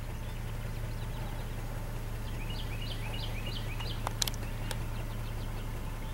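A small bird singing a quick run of about eight repeated chirping notes midway through, over a steady low hum. A few sharp clicks follow about four seconds in.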